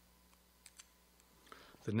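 A few faint, sharp clicks of papers being handled at a wooden lectern. Near the end a man starts speaking.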